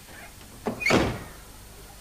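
A door or hatch shutting once about a second in, with a short thud.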